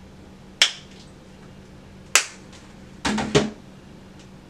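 Sharp plastic clicks from handling a cleanser tube and a facial spin brush: a single click, another about a second and a half later, then a quick cluster of clicks and knocks near the end.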